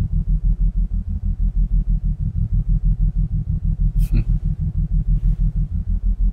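A deep, throbbing low pulse from the film's soundtrack, beating evenly at about five to six pulses a second. A brief hiss about four seconds in.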